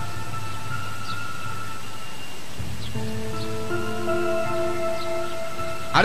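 Background music of sustained held chords, changing to a new chord about three seconds in, over a steady hiss.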